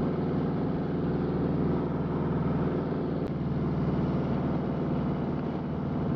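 Harley-Davidson Road King Special's V-twin engine running at a steady cruise, heard from the saddle through its pipes, with road and wind noise.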